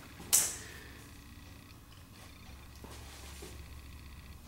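Faint low steady hum of the room, with one short hissy noise about a third of a second in.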